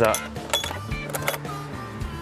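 Handle and latch of a hard-shell rooftop tent being pulled, giving a few short clicks and rattles.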